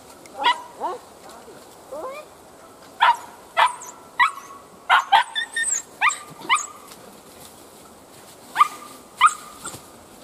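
A hunting dog barking at an otter holed up in a burrow: a series of short, sharp barks in irregular bursts, with a lull of about two seconds near the end.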